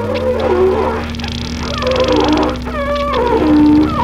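Experimental improvised music: a bass saxophone playing sliding, wavering tones over a steady low drone from an electric guitar run through effects pedals. The drone shifts pitch right at the start.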